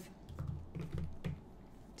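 A few light clicks and taps of a mechanical pencil being handled and set down on a paper-covered desk.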